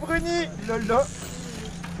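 People's voices talking in the first second, then a quieter stretch with a steady low hum underneath.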